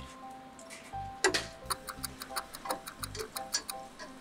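A wire whisk clinking against the sides of a stainless steel saucepan of cream, a fast even ticking of about six strikes a second that starts a little after a second in, over background music.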